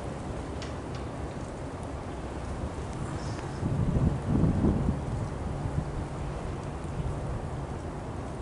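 Steady low rumble of wind on the microphone, swelling louder for about a second and a half around four seconds in.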